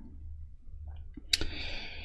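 Quiet room tone, then a single sharp click about a second and a half in, followed by a short hiss.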